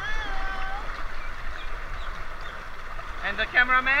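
Rushing water of a waterpark rapids channel churning around inflatable tubes, a steady hiss. A voice calls out at the start and a word is spoken near the end.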